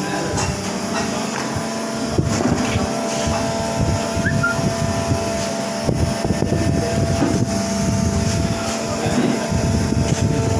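Haitian SA2500 injection molding machine running, its hydraulic power unit giving a steady machine hum with several held tones over an uneven low rumble.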